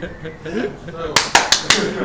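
Four quick, sharp hand claps a little after a second in, over low voices and chatter.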